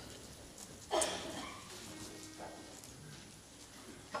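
Congregation getting to its feet: low rustling and shuffling in a large room, with one short, sharp sound about a second in.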